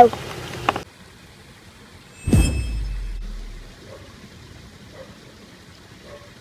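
Magic-spell sound effect, about two seconds in: a quick whoosh falling in pitch with a brief shimmer of high chime tones, fading out over about a second and a half.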